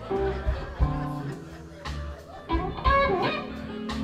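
Live blues-rock band playing, with electric guitar notes over bass, drums and keyboard.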